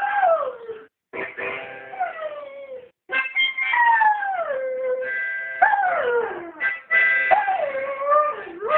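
A Hungarian vizsla howls along to a harmonica. There are several long howls, each sliding down in pitch, over the harmonica's held chords.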